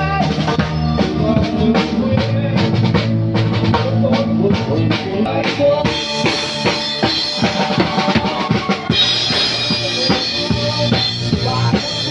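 Live band playing an upbeat rock number: a drum kit keeping a steady beat with bass drum and snare under electric bass and keyboard. About halfway through the cymbals get brighter and louder.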